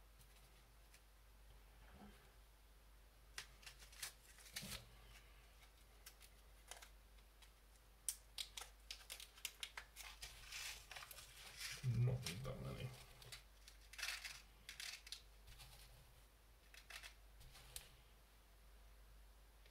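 Faint handling of small plastic parts bags and little metal pieces: scattered clicks and short bursts of crinkling, busiest in the middle, with one louder low thud about two-thirds of the way through.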